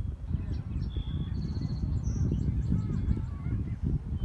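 Wind buffeting the microphone as a rough low rumble, with several birds chirping and whistling over it in short calls.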